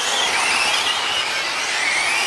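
Electric 1/8-scale GT RC race cars' brushless motors and drivetrains whining at high pitch, several at once. The whines rise and fall as the cars speed up and slow down round the track.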